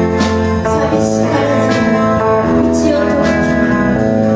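A live band of electric guitars, electric bass and drums playing a steady instrumental passage, with sustained guitar notes and regular cymbal hits.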